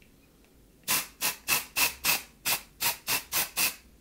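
Aerosol can of Girlz Only dry shampoo sprayed in about ten short hissing bursts, about three a second, starting about a second in.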